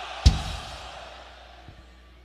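A huge crowd shouting a name together in answer to a count of three, the roar fading out over about a second and a half. One loud, low drum thump lands about a quarter second in.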